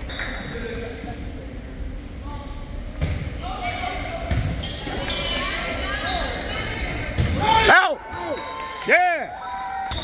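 Volleyball rally sounds in a large, echoing gym: the ball knocking off hands and floor over steady crowd chatter, with two loud, short squeaks about eight and nine seconds in.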